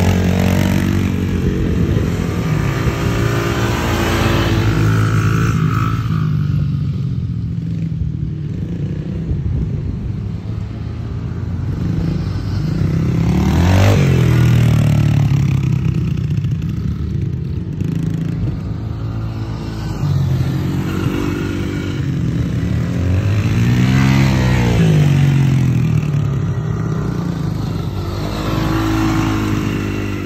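Small youth dirt bike's single-cylinder engine running and revving as it rides around close by. Its pitch rises and falls again and again, most clearly in two swells about a third and four-fifths of the way through.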